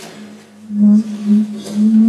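Low sustained tone, steady in pitch, from an experimental sound performance played over loudspeakers. It swells into several loud surges from just under a second in.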